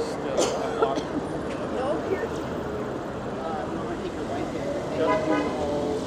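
Busy city intersection: road traffic running steadily while passing pedestrians talk, with a short pitched toot about five seconds in.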